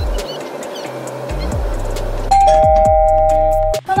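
Background music, then about two seconds in a loud two-note ding-dong chime, high then lower. It is held for about a second and a half and cut off suddenly.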